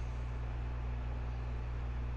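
Steady low hum with a faint even hiss and no distinct event: the background noise under the voice-over commentary.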